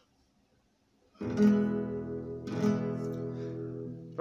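E major chord strummed on an acoustic guitar, twice: the first strum about a second in and the second a little over a second later, each left ringing.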